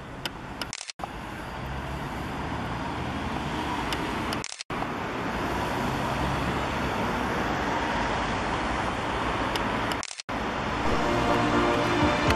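Steady road traffic noise from passing cars, broken by three brief dropouts where the recording cuts. Music starts again near the end.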